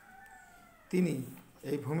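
A faint, drawn-out high call that falls slightly in pitch, then a man speaking from about a second in.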